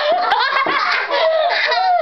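Children laughing hard in high-pitched giggles, several voices at once, with a quick run of laugh pulses near the end.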